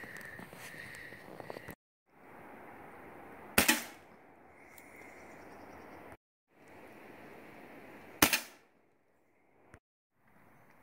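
Pellet gun fired twice, about four and a half seconds apart. Each shot is a single sharp crack that dies away quickly.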